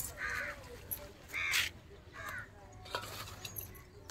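A bird calling three times, each call short and about a second apart, with a single light click near the three-second mark.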